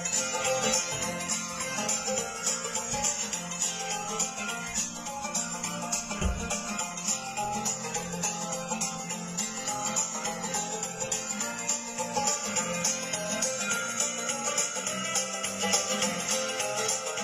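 Instrumental break of a country backing track: plucked banjo and guitar playing on without a singer.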